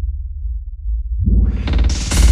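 Techno DJ mix at a breakdown: the deep bass plays alone, then from about a second in the higher parts sweep back in, rising until the full track returns at the end.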